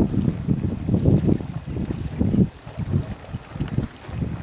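Wind buffeting the camera microphone, an uneven low rumble that surges and dips in gusts.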